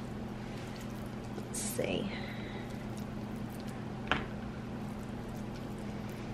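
Raw ground beef meatloaf mixture squished softly as it is shaped by hand, over a steady low hum. A brief voice sound comes about two seconds in and a single click about four seconds in.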